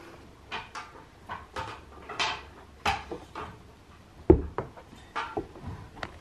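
A person climbing a ladder: a string of irregular knocks, creaks and steps on the rungs, with one heavy thump about four seconds in.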